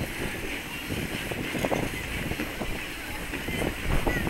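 Outdoor ice rink ambience: many skate blades scraping and hissing across the ice, with distant crowd chatter and wind rumbling on the microphone.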